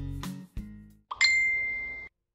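As the acoustic guitar background music ends, a single high bell-like ding sounds and rings on one steady pitch for nearly a second, then cuts off abruptly.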